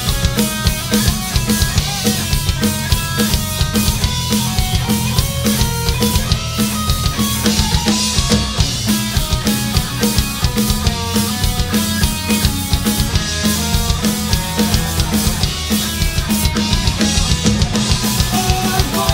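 Live rock band playing loud and driving on electric guitar, bass guitar and drum kit, with a steady kick drum and snare beat. It is an instrumental stretch, with no singing.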